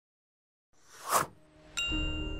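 Silence, then a whoosh that swells to a peak about a second in and fades, followed near the end by a bright bell-like ding with a lingering ring: the opening of an animated logo's sound sting.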